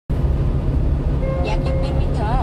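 Steady low road and engine rumble of a 1-ton truck on the move, heard from inside the cab. About a second in, a steady electronic alert tone from the navigation unit starts up, the warning ahead of a speed-camera announcement.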